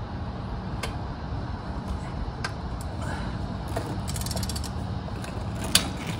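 Click-type torque wrench being worked on a transfer case drain bolt: a few single clicks, a quick run of ratchet clicks about four seconds in, and a sharp click near the end as the wrench signals that the 33 ft-lb setting is already reached. A steady low rumble runs underneath.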